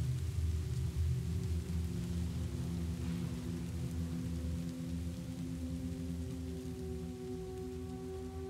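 Dark ambient outro music: several low sustained drone tones held steady over a soft rain-like hiss, slowly fading.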